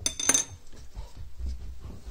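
A metal fire-starting rod set down on a granite hearth: a short metallic clink with a brief ring in the first half-second, then soft handling and knocking sounds.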